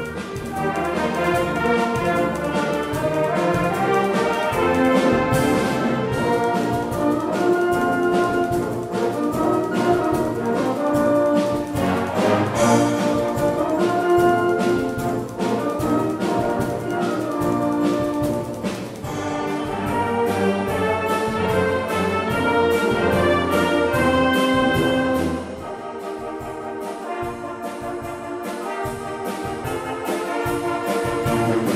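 Wind band of clarinets and brass playing a concert piece at full volume. About 25 seconds in it drops to a softer passage.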